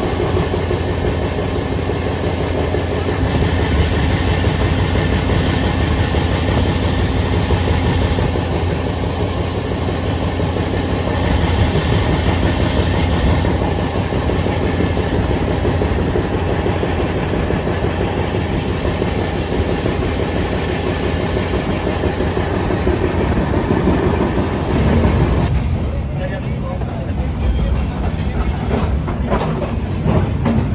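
Moving passenger train heard from on board: a steady rumble of wheels on the track, with clickety-clack from the rail joints. Near the end the rumble thins and separate clacks stand out.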